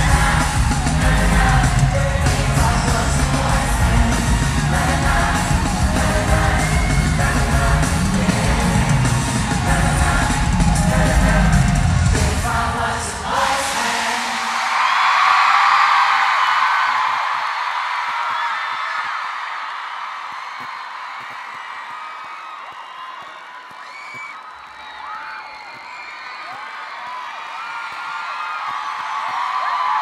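Live pop concert recorded from within the audience: the band's music with singing, heavy on bass, ends abruptly about thirteen seconds in. A crowd then screams and cheers, dies down somewhat, and swells again near the end.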